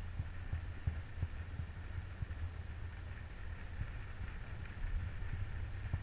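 Low, muffled rumble with light, irregular knocks, picked up by a cased action camera riding a moving chairlift chair.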